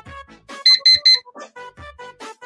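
Online countdown timer's alarm beeping three quick times as the countdown reaches zero, over background music.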